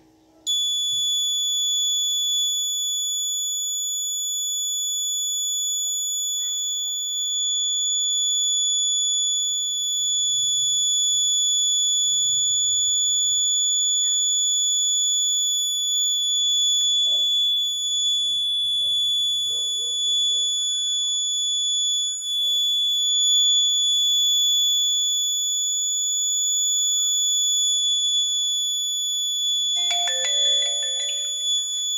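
A piezo alarm buzzer on an Arduino accident-detection board sounds one steady, unbroken high-pitched tone, starting about half a second in. It is the crash alarm, set off when the board's tilt sensor registers an accident while it sends the SMS alert.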